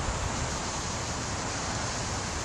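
Steady, even rushing noise of wind, with no distinct sounds standing out.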